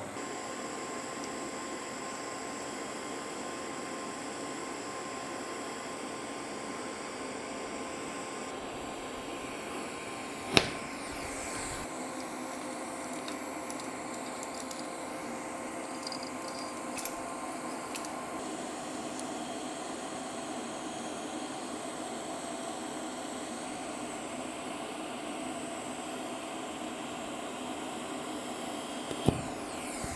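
Steady fan hum from a welding fume extractor running beside a TIG tacking job, broken by one sharp click about ten seconds in and a few faint ticks later.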